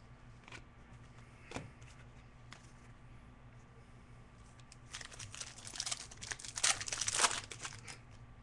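Trading-card pack wrapper being torn open and crinkled by hand: a few light clicks at first, then a dense crinkling burst of two to three seconds starting about five seconds in.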